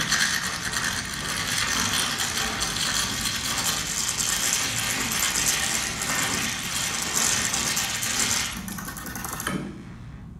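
Many small hard plastic balls clattering and rattling against each other as a hand rakes and scoops through a pile of them, dense and continuous, dying away about eight and a half seconds in. Heard played back over an installation's speakers in a gallery room.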